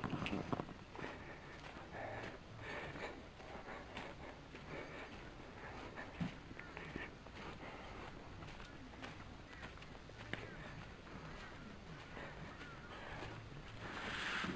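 Footsteps on short mown grass while walking with a handheld camera, heard as a faint, irregular patter of soft steps and handling rustle. A few faint bird calls come in near the end.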